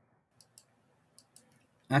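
Four faint computer mouse clicks in two quick pairs, about half a second and about a second and a half in.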